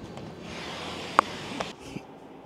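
A glass room door being opened: a soft rustling slide with a single sharp clink about a second in and a small knock just after.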